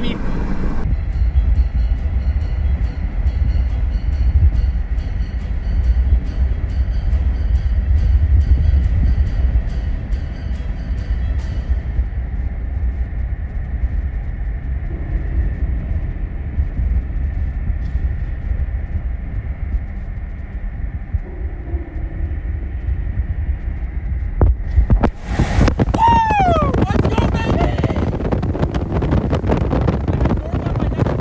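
Loud, steady low rumble of wind and road noise from a storm chaser's moving vehicle. A steady ticking at about two a second runs through the first third. Near the end, high sounds that sweep in pitch come in over the rumble.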